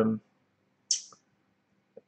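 A drawn-out spoken word trails off, then one short, sharp click with a high hiss about a second in.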